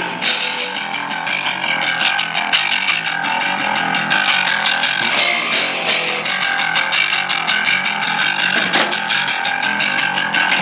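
Live thrash metal band playing a song: distorted electric guitars and bass over a fast drum kit with cymbals.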